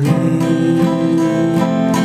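Strummed acoustic guitar under a man's single long sung note.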